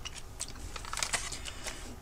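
A few light, scattered clicks and crinkles from a small paperboard candy box and its plastic blister pack being handled.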